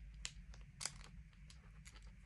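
Faint crinkling of a clear plastic packaging bag being handled: a few short, soft crackles, the clearest a little under a second in, over a low steady background hum.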